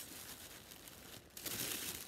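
Tissue paper from a shoe box rustling and crinkling as it is handled, louder in the last half second.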